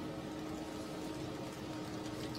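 Room tone: a steady hiss with a faint steady hum.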